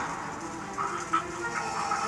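Film soundtrack playing quietly: a low musical score with a few faint, short sound effects.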